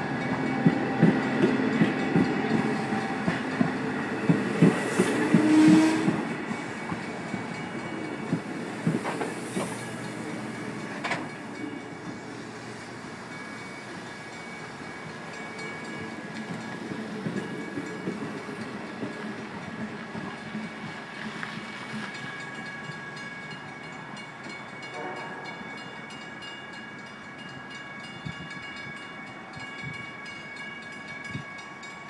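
A Long Island Rail Road diesel-hauled train of bilevel passenger coaches rolls past close by. Its wheels click rhythmically over the rail joints with a low rumble, loudest in the first six seconds or so, then settle into a quieter, steadier rumble.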